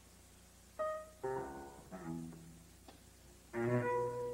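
Acoustic grand piano playing sparse, separate notes and chords with pauses between them, opening a free jazz improvisation. A single note sounds about a second in, chords follow, and a louder low chord comes near the end.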